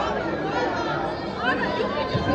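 Several people talking at once, overlapping chatter from spectators in a gymnasium.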